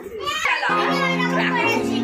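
Excited children's voices, joined about two-thirds of a second in by music with long held chords that shift once near the middle.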